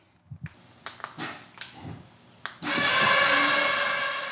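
Truck camper's electric jack motors running with a steady whine as the camper is lowered onto the truck bed. The whine starts suddenly about two and a half seconds in, after a few faint clicks.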